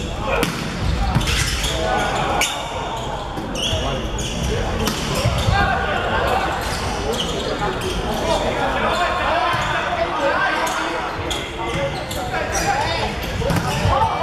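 Volleyball rally in a sports hall: sharp slaps of hands hitting the ball, sneakers squeaking on the court floor, and players calling out, all echoing in the hall.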